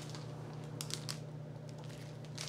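A few faint crinkles and clicks from a plastic-wrapped package being handled, about a second in, over a steady low hum.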